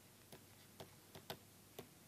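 Faint clicks of a stylus tapping on a pen tablet or screen during handwriting: about five short, irregular ticks, the loudest a little past the middle.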